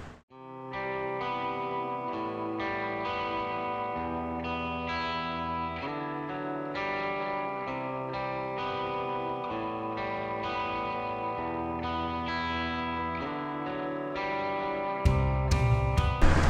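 Background music: sustained chords that change every second or two at an even level, fading in just after the start and cut off by louder sound about a second before the end.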